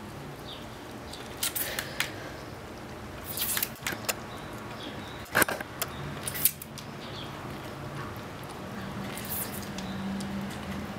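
A hand-held trigger spray bottle giving a few short squirts, mixed with small wet licking clicks from a ferret drinking water at the nozzle.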